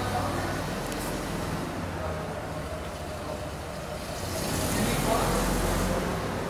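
A steady low mechanical rumble like a running engine, swelling a little near the end, under faint indistinct voices.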